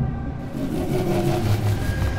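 Lamborghini Huracán Sterrato's V10 engine running, with a rushing noise that sets in about half a second in.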